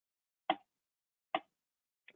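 Two short, sharp clicks, about a second apart, with silence around them.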